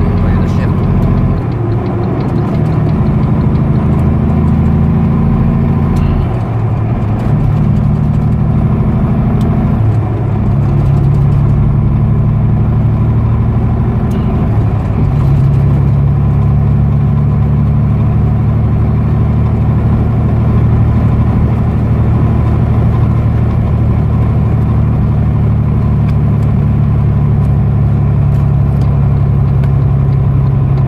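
Semi truck's diesel engine heard from inside the cab while the truck drives on the highway. The engine note steps to a new pitch several times in the first fifteen seconds, then holds steady.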